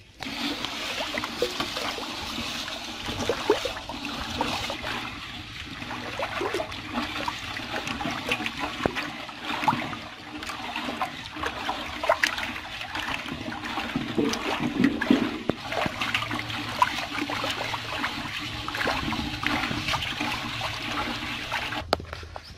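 A hand stirring paddy seed in salt water in a metal basin for seed treatment: steady swishing and sloshing of water, with many small clicks from the grains.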